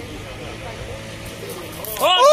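Voices of people talking in the background over a steady low background noise.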